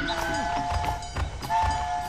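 Cartoon train horn sounding two long two-note blasts, with a few low thumps underneath.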